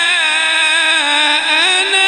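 A male qari's voice reciting the Quran through a microphone, holding one long melodic phrase without a break, with wavering ornaments and a slight rise in pitch near the end.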